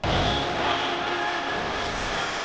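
Live gospel worship band music starting suddenly: drums and held chords over a heavy bass, the level slowly falling away.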